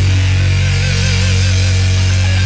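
Live heavy metal band holding a loud sustained chord with no drum hits, a single high note wavering in vibrato above it.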